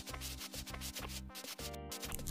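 Paint roller rolling thick gold texture paint over a wall: a rough, rubbing sound, under background music.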